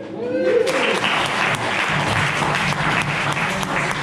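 Audience clapping and cheering as the handpan's ringing notes die away, opening with a rising-and-falling whoop and settling into steady applause about half a second in.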